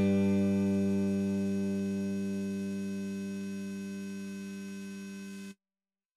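The final note of the song on a StingRay-style electric bass, with its backing, rings out as one held pitch and slowly fades. It cuts off suddenly about five and a half seconds in.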